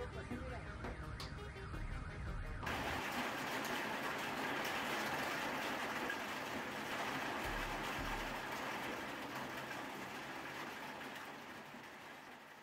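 Heavy rain and wind in trees, making a steady hiss that fades near the end. Before it, for the first two and a half seconds, there are faint wavering sounds.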